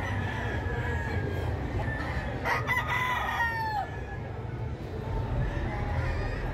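A gamecock crows once, starting about two and a half seconds in: a crow of about a second and a half that drops in pitch at the end, over a steady low background hum.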